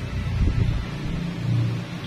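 A low, steady engine rumble from a vehicle, swelling about half a second in.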